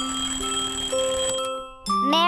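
Alarm clock ringing with a rapid bell rattle over a light children's-music melody, cutting off about three-quarters of the way through. A child-like singing voice starts right at the end.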